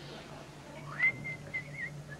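A person whistling: about a second in, one note slides up and holds briefly, then breaks into a few quick wavering notes.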